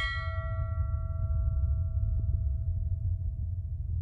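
A logo sting: a single bell-like chime struck right at the start, its high overtones dying away within about a second while its main tone rings on and slowly fades, over a steady deep rumbling drone.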